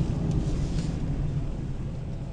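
Low, steady rumble of a car's engine and tyres heard from inside the cabin while driving, easing off slightly in level.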